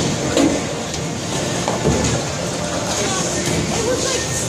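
Bowling alley sound: a bowling ball rolling down a wooden lane with a low rumble and a clatter about two seconds in, over the chatter of other bowlers.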